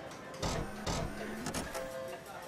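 Three short, noisy sound-effect bursts, about half a second apart, over a background music bed: graphic-transition effects in a TV channel ident.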